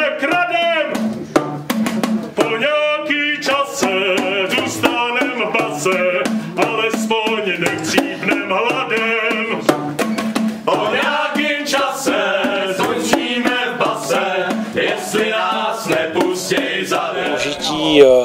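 A small ensemble performing a song: voices singing over boomwhackers, tuned plastic tubes struck in a quick, busy rhythm, with one long tube blown like a horn.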